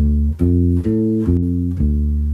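Fender Precision Bass played fingerstyle through a clean tone: a slow minor-triad arpeggio of five plucked notes about half a second apart, climbing to its top note about a second in and coming back down.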